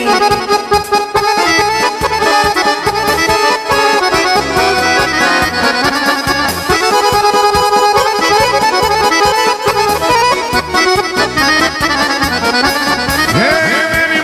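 Instrumental break in lively Balkan kolo folk music: an accordion-voiced melody over a steady bass-and-drum beat, with the singer's voice coming back in near the end.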